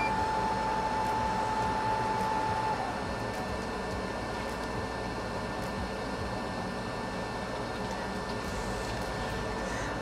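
Steady whir of a bench fume-extractor fan, with a thin steady whine that stops about three seconds in, leaving the fan a little quieter.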